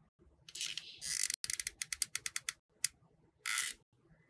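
Hot glue gun trigger clicking, a quick run of about eight clicks a second, with short scraping rustles from handling the craft pieces just before the clicks and again near the end.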